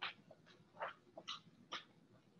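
Faint, short scratches of a stylus writing on a tablet's glass screen, about five separate strokes.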